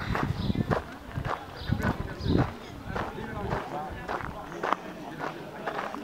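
Indistinct chatter of several people in the background, with repeated short knocks of footsteps walking across grass.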